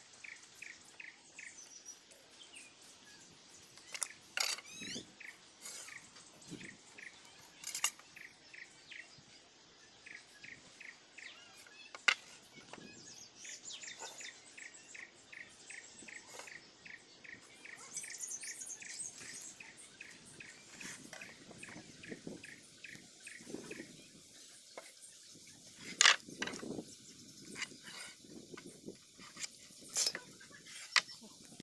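Hand work on timber: a few sharp taps and knocks of a steel try square, pencil and tape measure against wooden boards, the loudest about halfway through and near the end. Underneath, a faint regular chirping of about four chirps a second runs until about two-thirds of the way through.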